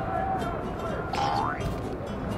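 A short cartoon "boing"-style sound effect: one whistle-like tone gliding upward in pitch, a little over a second in, over low background noise.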